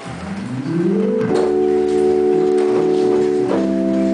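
Hammond organ playing jazz with a drum kit: a chord drops out, then slides upward over about a second into a held chord, which changes near the end, with cymbal strokes over the top.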